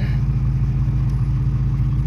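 Car engine idling: a steady, even low hum that does not change.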